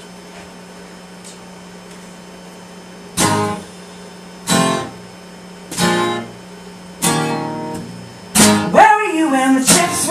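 Acoustic guitar starting a song: after about three seconds of quiet room hum, four single strummed chords ring out about a second and a quarter apart, then steadier strumming begins and a woman starts singing near the end.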